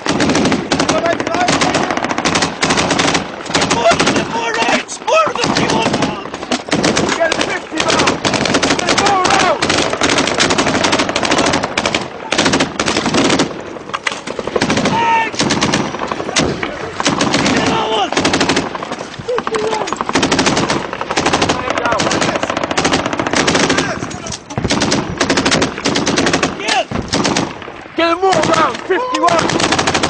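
Loud, near-continuous automatic gunfire: machine-gun bursts and shots following one another closely, with shouting voices heard among them.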